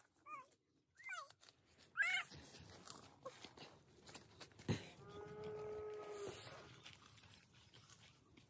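Animal calls: three short cries falling in pitch in the first couple of seconds, a sharp click a little past halfway, then one longer, steady call lasting over a second.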